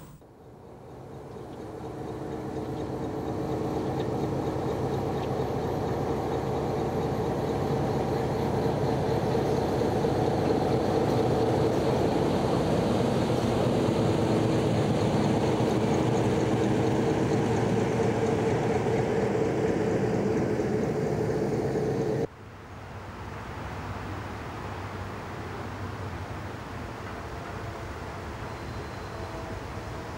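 A train rolling along the rails: a steady rumble of wheels on track with a few steady tones, building over the first few seconds. It cuts off abruptly about three quarters of the way through, leaving a quieter steady background noise.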